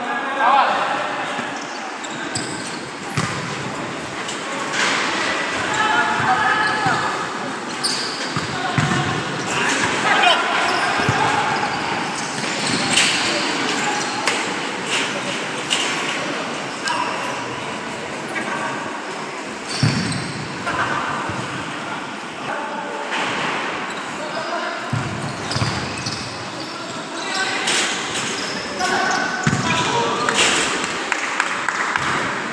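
Futsal ball being kicked and bouncing on a hard indoor court, several sharp impacts, among players' shouts and calls, with the echo of a large sports hall.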